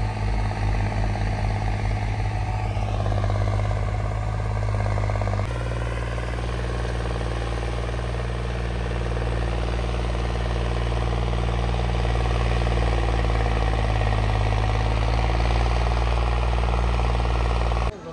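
John Deere tractor diesel engine running steadily under load while pulling a tine cultivator through ploughed soil. The engine sound changes abruptly once, about five seconds in.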